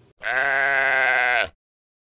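A single bleat, like a sheep's, a little over a second long, with a wavering pitch that dips slightly at the end before cutting off sharply.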